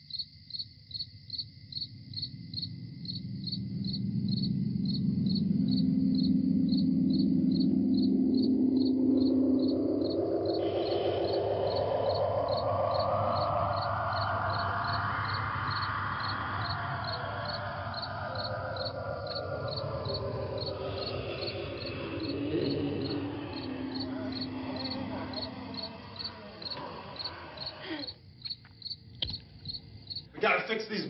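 Crickets chirping in a steady rhythm, about one chirp a second, on the film's night soundtrack. Over them a loud droning tone with several pitches swells up, rises steadily in pitch to a peak about halfway through, then slides back down and fades out, leaving only the crickets near the end.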